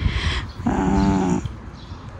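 A dog gives one short, steady, low vocal sound, a little under a second long, about halfway through.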